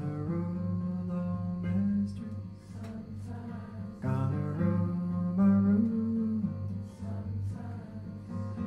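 Male folk singer's voice holding two long, drawn-out phrases over acoustic guitar, each phrase stepping up in pitch near its end.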